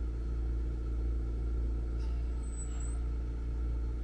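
Steady low hum of a home oxygen concentrator's compressor running, with a faint hiss above it.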